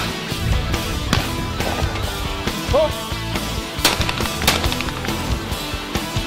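Shotgun shots over background music with a steady beat: one at the start, one about a second in, and two about half a second apart around four seconds in.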